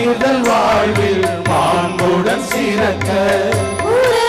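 Devotional hymn sung in a gliding, Indian style over instrumental accompaniment with a held drone and a low, pulsing beat.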